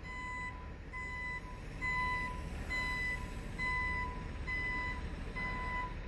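Backup alarm of a reversing dump truck delivering road base: a steady string of single beeps about once a second, over the low rumble of the truck's diesel engine.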